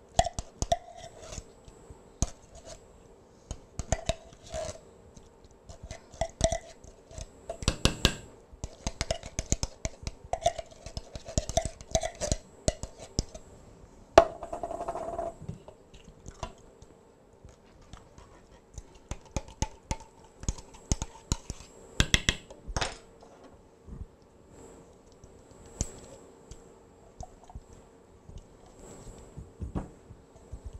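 A spoon scraping thick pumpkin puree out of a tin can into a mixing bowl, with irregular clicks and taps of the utensil against the can and bowl and a brief louder scrape about halfway through.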